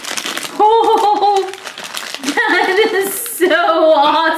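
Crinkling of a foil blind-bag wrapper being pulled open, in the first half-second, then a person's voice making wordless vocal sounds through the rest, with a brief rustle about three seconds in.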